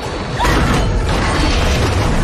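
Metal buoy clanking and creaking amid splashing, churning seawater, louder from about half a second in.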